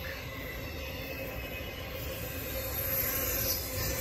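Intermodal freight train's container cars rolling past, a steady noise of steel wheels on the rails that grows a little louder after about three seconds.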